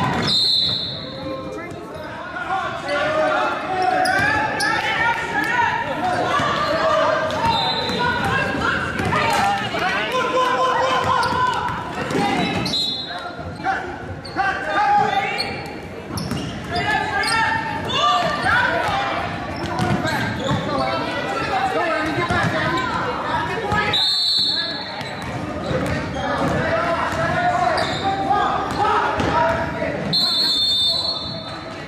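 A basketball being dribbled on a gym's hardwood floor, with a few short high sneaker squeaks, under the voices of players, coaches and spectators in a large gymnasium.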